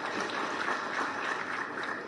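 Audience applauding, a steady spread of clapping.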